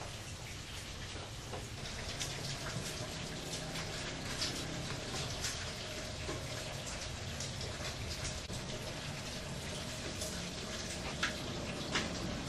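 Water boiling in a steamer under banana-leaf-wrapped fish pepes: a steady hiss with dense light crackling and popping, over a low steady rumble.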